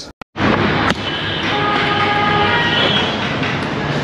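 A train running: a steady rumble with a few thin, level high tones over it through the middle. It follows a brief silent gap just after the start.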